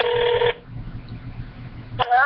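Telephone ringback tone heard through a mobile phone's speaker: one steady tone about half a second long that cuts off suddenly.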